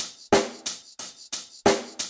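Background music: a drum-kit intro of evenly spaced hits, about three a second, each with a cymbal wash and a bass-drum thump, leading into a hip-hop track.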